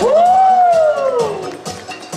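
A man's long, wordless exclamation over the PA, an "ooooh" that rises quickly in pitch and then sinks slowly for about a second and a half, as the battle music cuts off.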